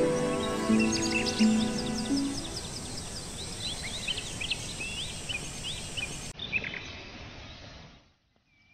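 Wild birds chirping over and over, many short quick calls against a steady outdoor hiss. Under them, low held music notes fade out in the first few seconds, and everything dies away at the end.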